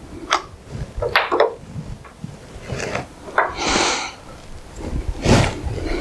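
Handling noises of a plastic-cased pipe-locator transmitter and its clamp cable being moved and set down on a wooden table: a few short knocks and clicks, with a brief rustle near the middle.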